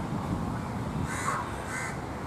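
Two short animal calls about half a second apart, over a steady low background rumble.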